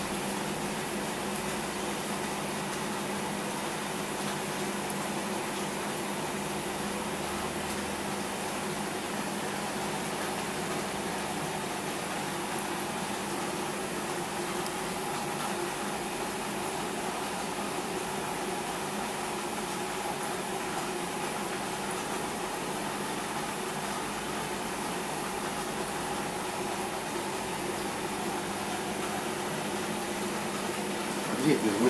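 Aquarium aeration and filtration running: a steady hum with a constant bubbling hiss from air rising through the tank.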